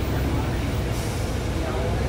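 Inside a 2000 Neoplan AN440A high-floor transit bus under way: a steady low rumble from its Cummins ISM diesel engine and driveline, mixed with road noise.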